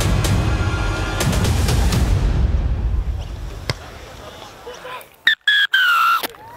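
Dramatic soundtrack music with heavy drum hits fades out about halfway through. Near the end a referee's whistle blows one long blast, falling slightly in pitch: the full-time whistle ending the match.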